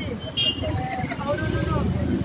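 Speech: a woman talking into press microphones, over a low, steady rumble of street traffic.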